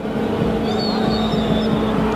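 A referee's whistle blows once for about a second, beginning just under a second in, calling a foul on a player who has gone down. Under it a steady low hum of pitch-side sound.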